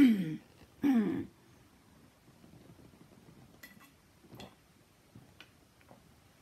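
A woman clearing her throat twice in the first second or so, each a rough vocal burst falling in pitch, to get rid of a frog in her throat. A few faint clicks follow later on.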